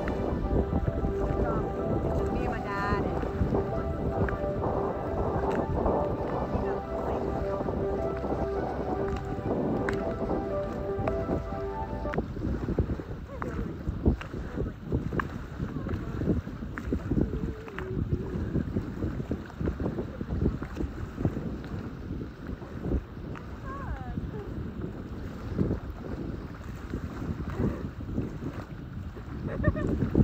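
Music plays for about the first twelve seconds and then cuts off. Underneath it and after it, wind buffets the phone's microphone and small waves lap at the shore.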